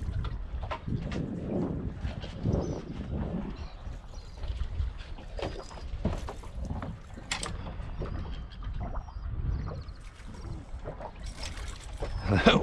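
Water slapping and lapping against the hull of a drifting boat, with wind rumbling on the microphone and a few light knocks.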